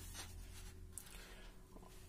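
Faint rustle of a hand and ballpoint pen moving over a paper question sheet, with a light tick about a second in, over a faint steady hum.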